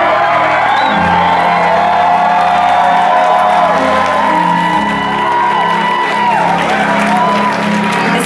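Live band music at a concert: held chords over a bass line that moves note by note, with audience whoops and cheers.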